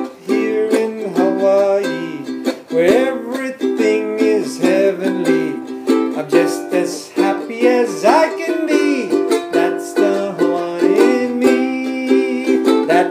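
A Manuel Nunes ukulele, made around 1900, strummed in a steady rhythm while a man sings over it.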